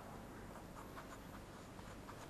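Faint scratching of a pen writing on paper, in short, irregular strokes.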